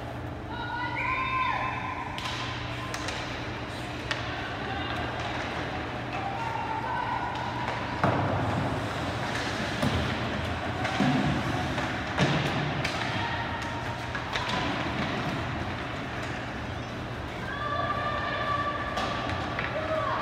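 Ice hockey play in an indoor rink: sharp knocks from play against the boards and ice about eight, ten and twelve seconds in, over a steady low hum. Voices call out near the start and again near the end.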